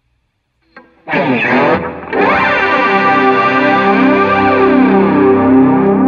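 Ibanez electric guitar played through a Zoom G5n multi-effects processor on a Bogner amp model: a short chord about a second in, then a chord left ringing from about two seconds on.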